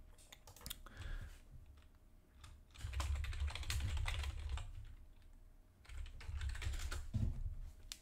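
Typing on a computer keyboard: a run of keystroke clicks as a short name is entered, with dull low thuds under the keystrokes.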